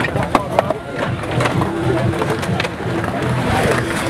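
Skateboard wheels rolling on a concrete skatepark bowl, with several sharp clacks of boards and trucks striking the concrete, over a background of voices.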